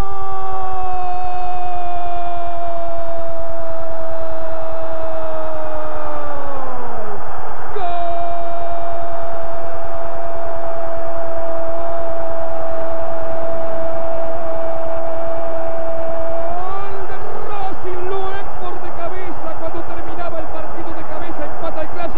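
A football commentator's long drawn-out goal cry, "gooool", over a cheering stadium crowd. It is held on one pitch for about seven seconds, sliding down at its end, then taken up again as a second long held note of about eight seconds. After that the crowd noise carries on under broken shouting.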